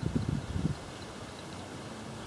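Wind buffeting the microphone in low, uneven gusts for about the first second, then a faint steady outdoor background.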